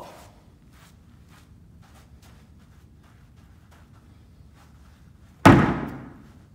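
A thrown ball hits a plywood wall with a single loud bang about five and a half seconds in, trailing off quickly. Before it, only faint scattered ticks.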